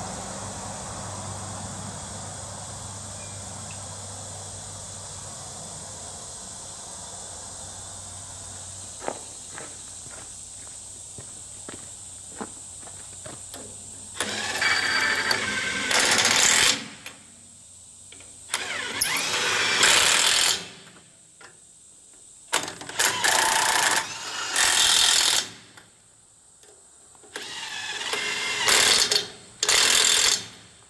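Impact wrench running lug nuts down onto a trailer wheel's studs in about five loud bursts of two to three seconds each, starting about halfway through. Before them come light metal clicks of the nuts being started by hand, over a steady low hum that fades.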